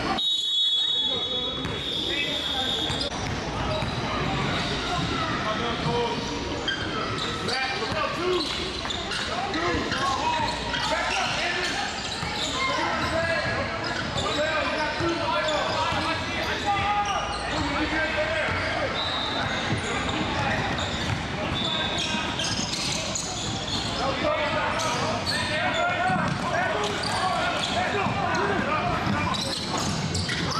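Live court sound of a basketball game in a large gym: basketballs bouncing on the floor amid indistinct shouting and chatter from players and spectators. The sound briefly drops out right at the start, followed by a short high-pitched tone lasting a couple of seconds.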